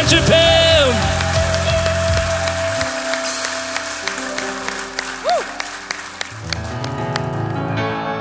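A worship band ends a song: the singer's last held note, then a sustained keyboard chord fading under scattered hand-clapping. Soft keyboard chords start the next song near the end.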